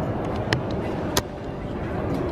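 Outdoor city background noise: a steady low rumble, with two sharp clicks, the first about half a second in and the second a little over a second in.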